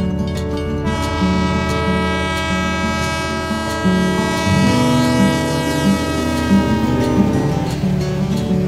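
A train horn sounds one long blast about a second in, its pitch sagging as it fades out near the end, over strummed acoustic guitar music.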